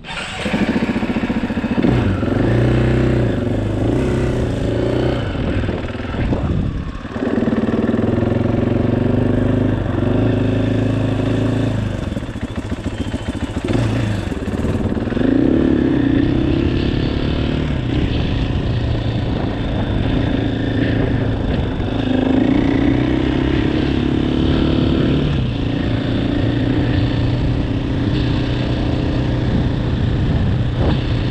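2018 KTM 500 EXC-F's single-cylinder four-stroke engine running as the dirt bike pulls away and rides on. Its pitch rises and falls repeatedly with throttle and gear changes, with a brief drop about seven seconds in.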